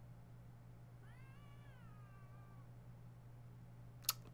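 One faint meow-like call about a second in, lasting under two seconds, its pitch rising and then falling. It sits over a steady low electrical hum, with the room otherwise near silent.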